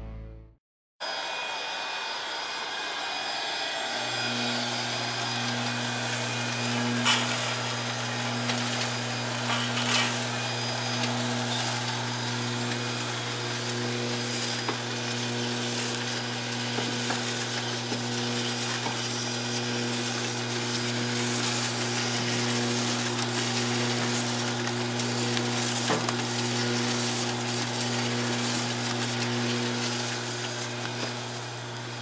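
Doboy Mustang IV horizontal flow wrapper running: steady mechanical noise of its drives, chain infeed and film feed, with a low steady hum that comes in about four seconds in and a few sharp clicks.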